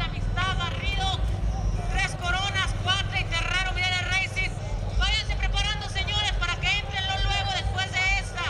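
Indistinct voice talking in runs with short pauses, over a steady low hum.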